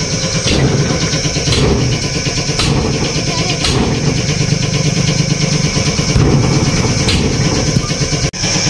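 Tractor engine idling steadily, with sharp hammer knocks on the trolley's wheel about once a second for the first few seconds and once more near the end as the wheel is worked loose to remove it.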